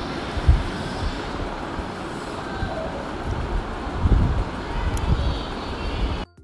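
Steady rush of a gas stove burner with a metal spoon stirring milk in a steel pot, a few dull low thumps and one sharp click about five seconds in.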